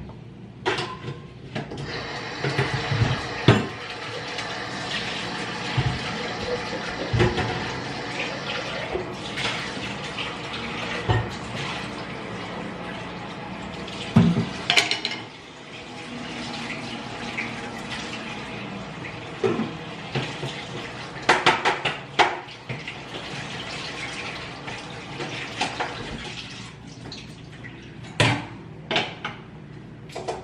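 Kitchen tap running into a sink for about the first half, then dishes and utensils clinking and knocking in the sink as they are washed.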